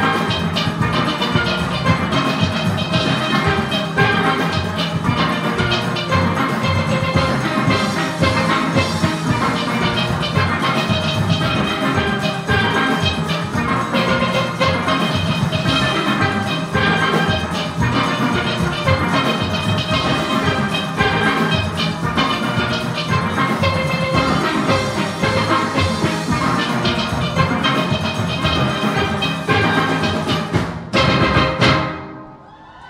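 Large steel orchestra playing: many steelpans sounding dense, fast-moving notes together over a driving percussion beat.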